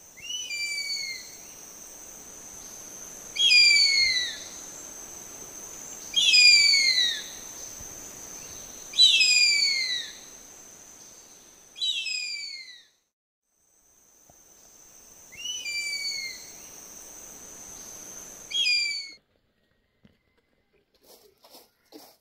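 Bird of prey screaming: seven loud, downward-sliding screams, each about a second long, spaced a few seconds apart over a steady high thin tone. The calls and the tone stop about 19 seconds in, followed by a few faint clicks.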